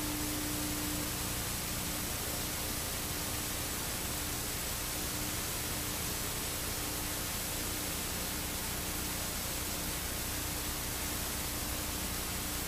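Steady hiss of static-like noise with a faint low hum tone underneath, unchanging throughout.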